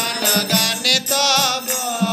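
Male voice singing a Vaishnava devotional bhajan, with a long wavering held note about halfway through, accompanied by regular strokes on a mridanga (clay two-headed drum) and the jingling of kartal hand cymbals.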